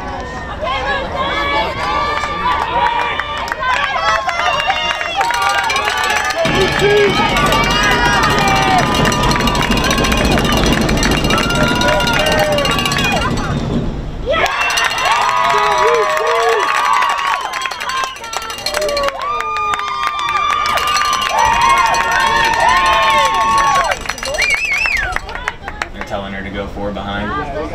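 Many overlapping voices of spectators and players shouting and calling out during a girls' lacrosse game, with no single clear talker. A low rumble runs under the voices from about six seconds in to about fourteen seconds.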